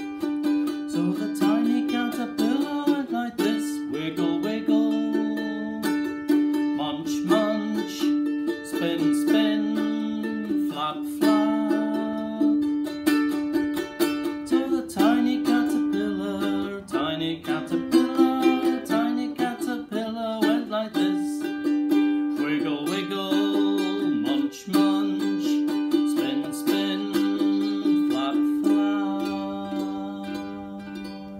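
Ukulele strummed in a steady rhythm, with a man's voice singing a simple children's song over the chords.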